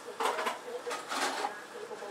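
Two short, breathy bursts of a man's voice, soft laughter or exhaling: the first just after the start and the second about a second in.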